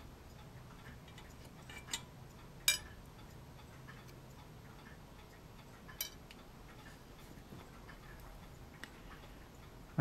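A few light, sharp clicks of metal tweezers and small plastic parts against empty tuna tins as the parts are set into them, about three ticks spread over several seconds, over a faint low hum.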